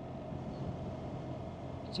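Steady motorcycle riding noise from a BMW R1300GS cruising at about 45 mph on a wet road: wind rush on the rider's microphone with a low, even engine hum underneath.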